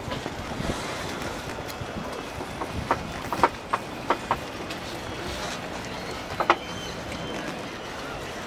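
Steady outdoor background noise with a run of short, sharp knocks and clicks about three to four and a half seconds in, and a quick double knock about six and a half seconds in.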